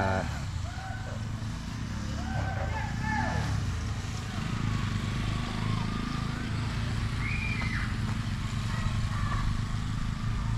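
Motorcycle engines on the nearby road, a steady low hum, with faint distant voices over it.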